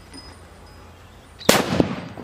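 A large Tiger-brand sutli bomb (jute-twine-wrapped firecracker) exploding inside a cement-lined hole in the ground about one and a half seconds in: one very loud blast that dies away over about half a second, with a second sharp crack a moment later.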